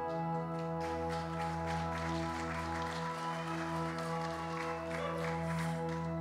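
Soft sustained chord from a worship pad, held steady under a faint noisy haze.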